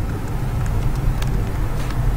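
Steady low background rumble with a couple of faint clicks, one about a second in and one near the end.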